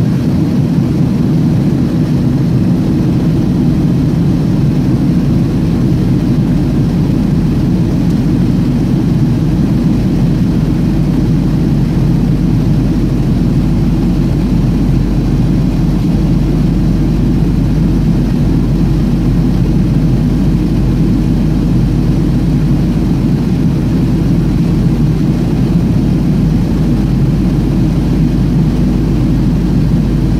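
Steady low cabin noise of a Boeing 737 airliner in descent, jet engines and rushing airflow heard from inside the passenger cabin.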